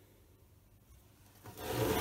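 A boxed silicone mould in its rigid casing being turned and slid across the workbench top: a short scraping rub about one and a half seconds in, after a quiet stretch.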